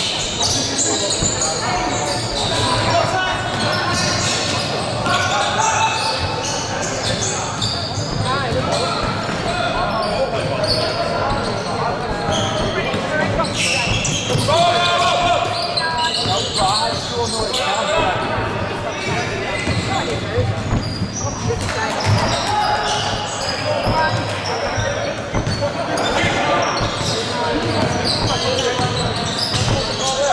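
Live basketball game sounds in an echoing gym: a ball bouncing on the hardwood court, with players and spectators calling out throughout.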